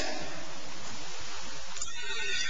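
Steady hiss of room and recording noise with no speech, with a faint high tone coming in near the end.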